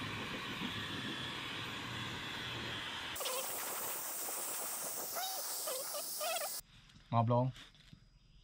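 Dyson Supersonic hair dryer running steadily, blowing a dog's coat dry after its bath. About three seconds in the sound turns to a brighter, louder hiss, and it stops suddenly near the end.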